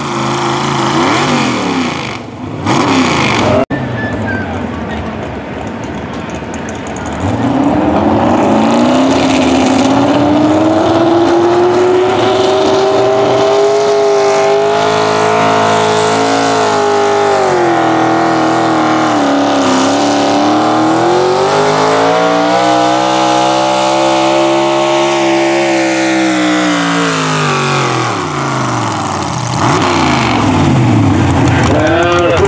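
Super stock gas pulling truck's engine at full throttle dragging a weight-transfer sled. The pitch climbs steadily, sags briefly about two-thirds of the way through, climbs again, then falls away near the end as the pull finishes. In the first few seconds another pulling truck's engine is heard ending its run.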